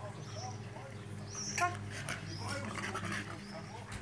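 Wolfsspitz (keeshond) dogs whimpering in short, high, rising-and-falling whines, with voices talking faintly in the background and a sharp click about a second and a half in.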